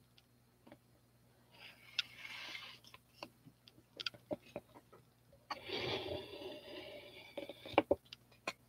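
Faint handling of a plastic mixing cup: scattered ticks and taps, with two short stretches of scraping, about two seconds in and again from about five and a half to seven and a half seconds.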